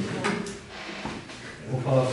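A voice in a roll-call vote, with two short knocks in the first half second and a quieter stretch before the voice returns near the end.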